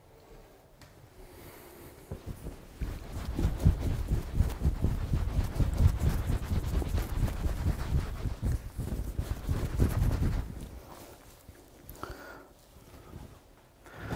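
A bath towel rubbed briskly over damp hair, heard as a dull, rapid, irregular rustling and scuffing. It starts a couple of seconds in and stops a few seconds before the end.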